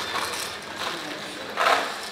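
Plastic casino chips clattering as a roulette dealer sweeps them off the felt layout, with a louder burst of clatter near the end.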